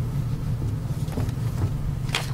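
Steady low room hum in a pause between speech, with a couple of faint ticks about a second in.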